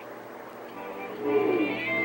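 Background television audio starting about a second in: music with held tones and a cat-like meow.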